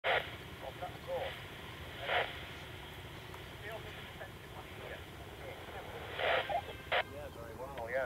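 A person speaking quietly in short, broken phrases, with several short bursts of hiss over a steady low background noise.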